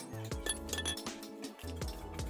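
Background music with a steady bass line, over repeated ringing clinks of a hand hammer striking an iron workpiece held in tongs on an anvil.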